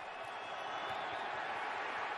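Stadium crowd noise on a football television broadcast: a steady, even din with no distinct calls.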